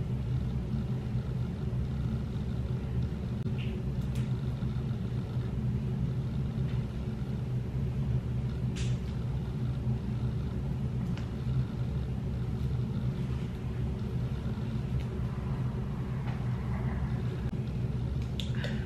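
A steady low rumbling hum, even throughout, with a couple of faint ticks over it.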